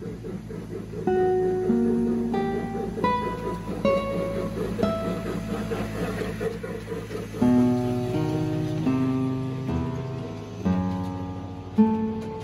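Solo acoustic guitar music: single plucked notes ringing and fading one after another, with a few fuller chords struck in the second half.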